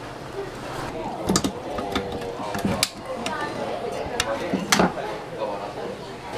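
Chopsticks clicking against bowls and dishes during a meal: several sharp clicks, over background voices.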